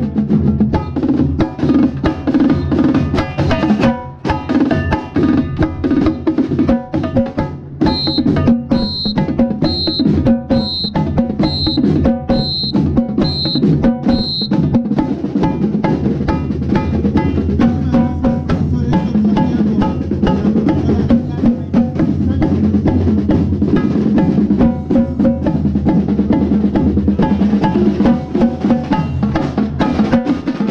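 Marching drumline playing a fast cadence, heard close up from a set of Tricon multi-tenor drums struck with sticks, with snare and bass drums around them. For several seconds about a third of the way in, a high ping sounds about once a second over the drumming.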